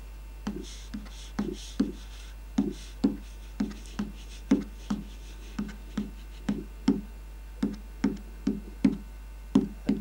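A mounted photograph card tapped again and again with a thin stick, about two to three light taps a second, each giving a short, low-pitched ring. The pitch of the tap tone shifts with the spot tapped, higher on some parts of the card and lower on others, a demonstration of the card's tap tones and node points.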